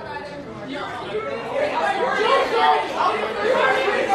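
Indistinct chatter of many overlapping voices from a group of people, growing a little louder over the first couple of seconds.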